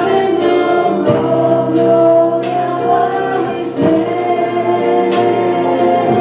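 A live worship song with two women singing over acoustic guitar and a drum kit, struck every second or so.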